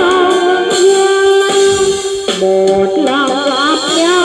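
Karaoke singing: a voice sings a slow Vietnamese song over an instrumental backing track playing from a phone, holding long notes with vibrato near the end.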